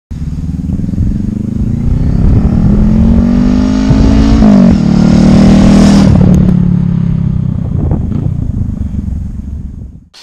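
Motorcycle engine accelerating, its pitch climbing until a gear change about four and a half seconds in. It then runs on with a slowly falling pitch and fades out near the end.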